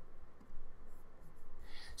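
Quiet room tone with faint scratchy handling sounds at a desk, and a soft knock about half a second in.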